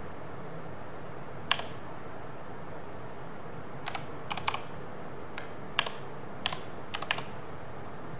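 Typing on a computer keyboard: about nine irregular keystrokes spelling out a short file name. One key falls early and the rest bunch together in the second half, over a steady background hiss.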